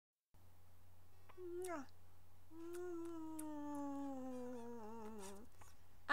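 A voice making two meow-like calls: a short rising-and-falling one, then one long call of about three seconds that slowly falls in pitch and wavers at the end. A steady low electrical hum runs underneath.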